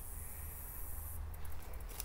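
Faint outdoor background in a pause between words: a steady low rumble with a thin high hiss, and a few faint ticks in the second half.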